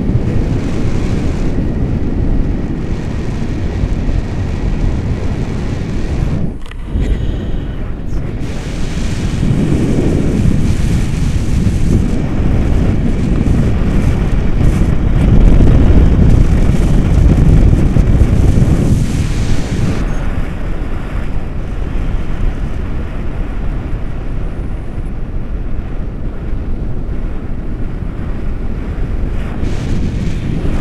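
Wind rushing over an action camera's microphone in paraglider flight: a loud, deep, steady rush that swells about ten seconds in and again from about fifteen to nineteen seconds.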